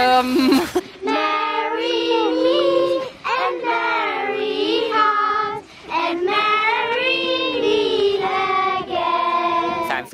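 A group of children singing a song together in unison. It starts about a second in, after a moment of talk, and goes in phrases of a few seconds with short pauses between.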